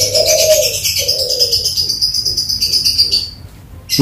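Birds calling: a dove cooing in two low phrases over the first second and a half, over a high, fast-pulsing trill that stops a little after three seconds in.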